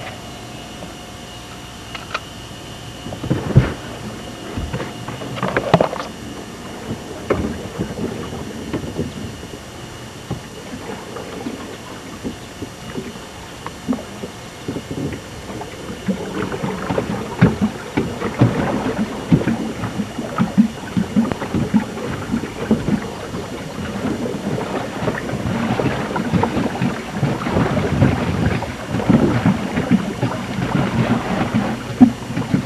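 Plastic paddle boat moving on a pond: water splashing and churning with irregular knocks, getting busier and louder in the second half, with some wind rumble on the camcorder microphone.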